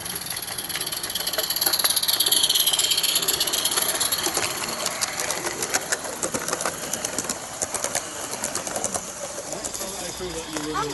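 A small live-steam garden-railway locomotive passing close by, its steam hiss swelling and dipping in pitch as it goes by. Then its train of coaches follows, the wheels clicking quickly over the track.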